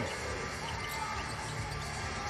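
Basketball bouncing on a hardwood court over steady arena noise, with faint music in the hall.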